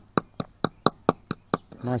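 Claw hammer striking a small red stone on a stone paving slab, crushing it to powder: quick, even blows about four a second. A voice comes in near the end.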